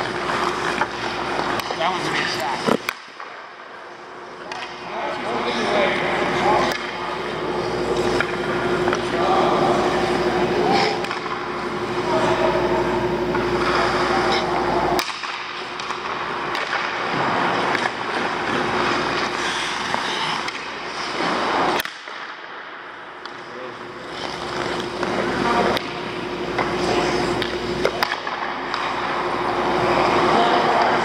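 Hockey skates scraping and carving on rink ice as players skate in, the noise building over several seconds at a time. Each run ends with a sharp crack of a shot, about four times.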